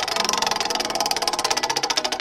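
Spinning prize-wheel sound effect: a rapid run of ticks, about twenty a second, that spreads out slightly toward the end as the wheel slows.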